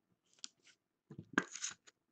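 A trading card being put into a clear plastic magnetic One-Touch card holder: faint plastic handling with a sharp click about two thirds of the way through, then a brief scuffle of plastic.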